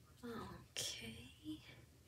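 Faint, soft whispered speech in a few short phrases.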